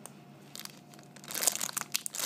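Clear plastic packaging bag crinkling as fingers squeeze the foam squishy sealed inside it. It starts faintly and turns into loud crinkling after about a second and a half.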